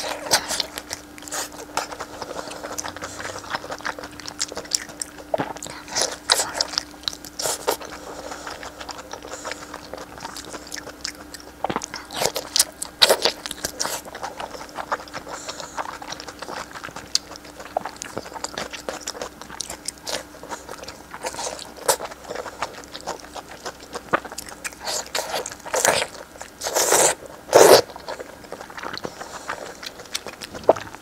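Close-miked eating: biting and chewing soft, saucy braised meat, with many short sharp mouth clicks and the sound of pieces being torn apart by hand. The loudest bites come in a cluster near the end.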